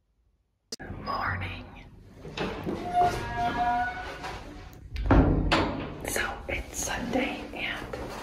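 Close-up whispered speech with the bumps of a phone being handled, starting suddenly under a second in after silence, and a heavy thud about five seconds in.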